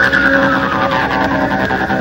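Techno DJ mix: a dense, fast electronic beat under a high, shrill synth tone that glides steadily downward in pitch.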